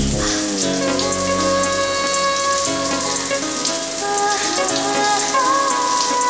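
Slow instrumental film-song music with long held notes, over a steady hiss of water spraying from a running shower.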